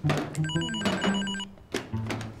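Desk telephone ringing once with a warbling ring, about a second long, over background music with plucked bass notes.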